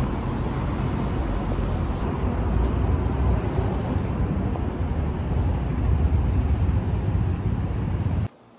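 Loud city street noise, a steady low rumble of road traffic that cuts off suddenly just after the end.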